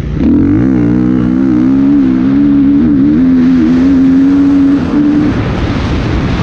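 Dirt bike engine under hard throttle: the pitch climbs quickly, holds steady at high revs for about five seconds, then the throttle is shut off near the end and the engine note falls away into a rush of wind on the microphone.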